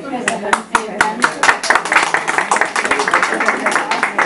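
An audience applauding: separate claps begin just after the start and quickly thicken into dense, continuous applause.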